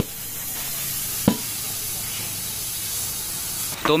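A steady hiss of escaping air that stops just before the end, with a single knock about a second in.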